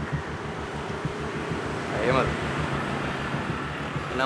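Steady background noise with a low hum, and one short vocal sound from a person, a brief rise and fall in pitch, about two seconds in.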